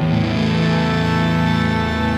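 Distorted electric guitar comes in suddenly and loud, holding a sustained chord over a steady low bass note, in a live rock band performance.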